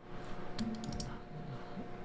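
A short burst of computer keyboard keystrokes, about five quick clicks in half a second, over a faint steady hum.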